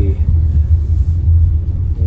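Steady low rumble of a car heard from inside its cabin as it drives slowly.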